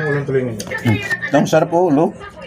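A person's voice, drawn out and wavering up and down in pitch, over a faint steady hum.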